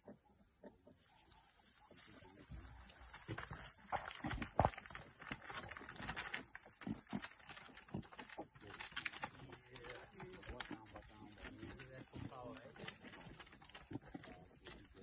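Faint murmured voices with a run of scratches and knocks, over a steady high-pitched hiss that starts about a second in.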